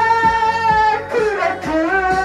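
Trot karaoke backing track with a guitar lead: one long held note, then a run of bending notes from about a second in.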